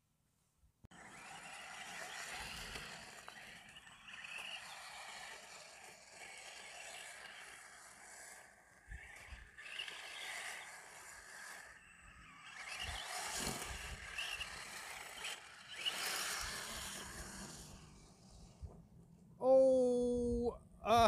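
Arrma Senton 3S BLX RC truck's brushless motor and tyres running over gravel and tarmac, surging louder and softer as it is driven in bursts, after a short silent moment at the start.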